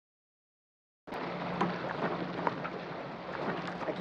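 Silence for about a second, then the steady wash of wind and sea heard on the deck of a boat, with a faint low hum and a few light knocks.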